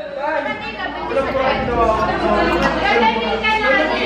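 Speech only: several voices chattering over one another.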